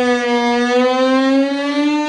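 Violin bowed in one long unbroken note that sags slightly in pitch, then slowly glides upward like an engine winding up, imitating a motorbike.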